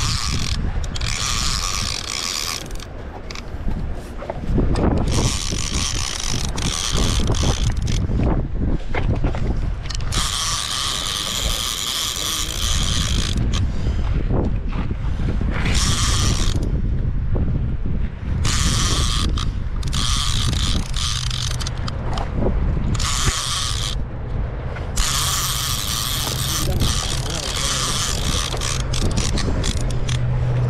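Heavy conventional fishing reel being cranked in spells of a few seconds each, its gears and clicker whirring as line is wound in on a kingfish, over wind rumble on the microphone.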